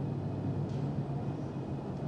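Steady low hum and room noise from a large hall, with no distinct event.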